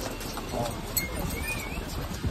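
Hooves of riding ponies clip-clopping as they pass close by, with people's voices around.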